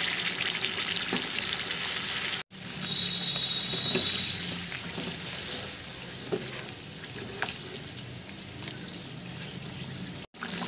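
Chicken pieces cooking in gravy in a kadai, sizzling and bubbling, with a spatula stirring through it now and then. The sound cuts out for a moment about two and a half seconds in.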